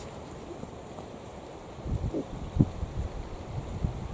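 Wind buffeting the microphone: a low rumble that gusts harder from about halfway through, with two brief faint sounds just after halfway.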